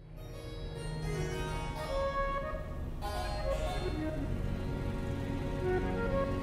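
Instrumental background music with sustained pitched notes, fading in from silence at the start.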